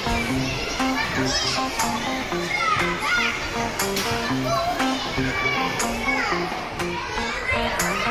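Children's voices, shouting and chattering in a play area, over background music with a short-note melody.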